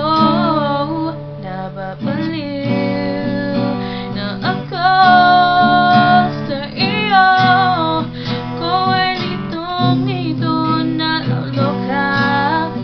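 A woman sings a Tagalog song while strumming an acoustic guitar, a solo voice-and-guitar performance. She holds one long note around the middle.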